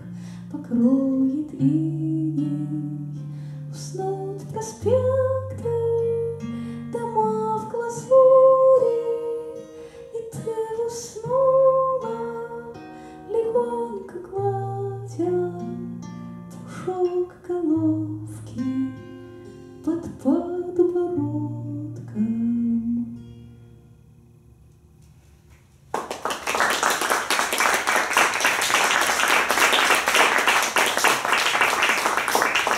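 A woman singing to her own strummed 12-string acoustic guitar, the song ending with sustained notes about three-quarters of the way through. After a brief pause, audience applause starts near the end.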